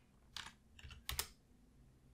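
A few faint computer keyboard keystrokes, spread over about a second, as a new value is typed into a software input field.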